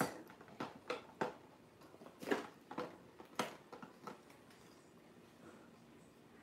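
Light clicks and taps of small plastic miniature toy items being handled against a plastic display tray and countertop: about seven scattered, separate clicks, mostly in the first four seconds.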